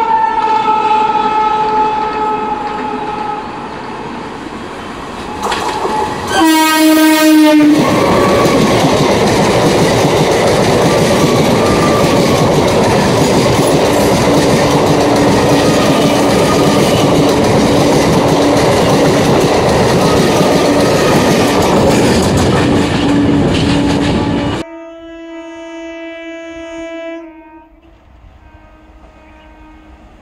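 Indian Railways EMU local train sounding its air horn as it approaches, then passing close by for about seventeen seconds with a loud steady rush and the clatter of wheels over the rails. The passing sound cuts off suddenly, and a fainter horn from another train follows.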